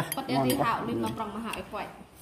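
Metal spoons clinking against ceramic rice bowls and a metal serving pot during a meal, with one sharp clink at the start and a few lighter ones after.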